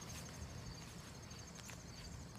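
Faint insect chirping in grass, a high note pulsing fast and evenly, with a low outdoor rumble underneath.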